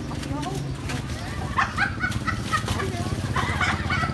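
Indistinct voices of people talking and exclaiming at a street stall, growing busier after the first second and a half, over a steady low hum of street traffic.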